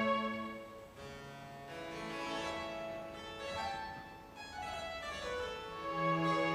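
Baroque harpsichord playing with a string orchestra. The full strings drop away about a second in, leaving a softer passage, and swell back in near the end.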